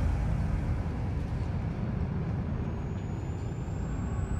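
A steady low rumble with a hiss over it, vehicle-like but with no clear engine or motor note, from the sound design of a car promo soundtrack.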